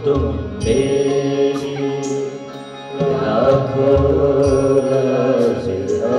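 A Hindi devotional bhajan performed live: a harmonium holds sustained chords under singing voices in a slow chant-like melody.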